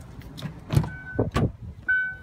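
Clunks and knocks as the driver's door of a 1999 Ford Windstar is opened and someone climbs into the seat, then the van's warning chime begins, a short electronic beep repeating about once a second.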